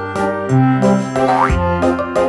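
Background music with a stepping bass line and a quick rising sliding note a little past the middle.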